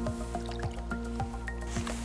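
Methane bubbles rising from the sediment and breaking the water surface in small plops and drips, a few a second, over steady background music.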